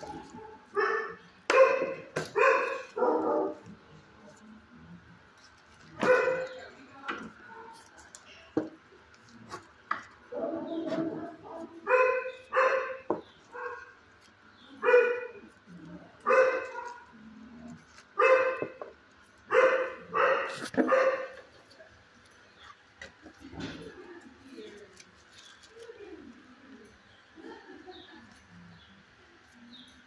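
A dog barking in a shelter kennel: about a dozen short, loud barks, singly and in quick pairs with pauses between, dying away after about 21 seconds.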